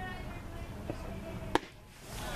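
Faint voices around a ball field, then a single sharp pop about one and a half seconds in: a pitched baseball hitting the catcher's leather mitt.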